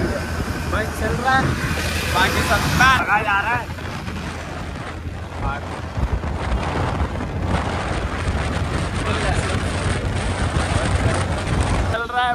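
Wind rushing over the microphone with a steady low rumble. A voice is heard in the first few seconds.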